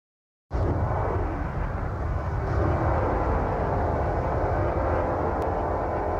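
A steady, dense low rumble like a running engine or aircraft starts abruptly about half a second in, with no beat. It is the opening drone of an electronic track.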